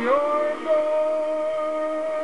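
A man singing a pop ballad over a backing track, sliding up into one long held note near the end of a line.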